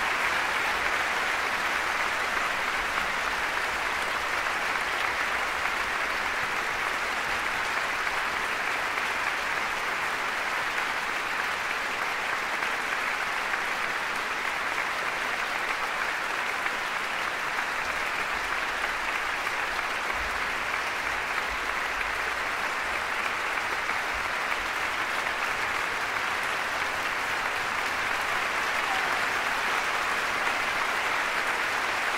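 Large concert-hall audience applauding steadily.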